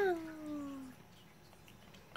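A cat's single meow, starting at the window's onset and falling in pitch over about a second.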